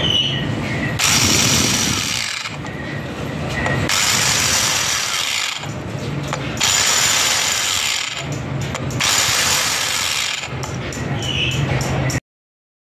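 Power-driven valve seat cutter cutting the seat face of a cylinder head valve seat. It runs in four bursts of about a second and a half each, with short pauses between.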